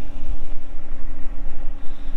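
A diesel engine idling steadily, heard as a low hum and rumble, with wind buffeting the microphone.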